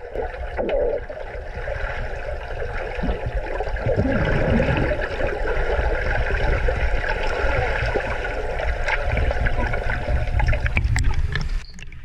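Muffled water sloshing and bubbling picked up by a submerged camera, with a low rumble underneath. It cuts off sharply near the end.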